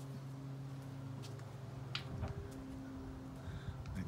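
A faint, steady low hum, with a few light clicks or taps.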